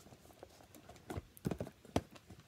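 A deck of reading cards being handled and laid on a tabletop: a few soft knocks and taps, the sharpest near the end.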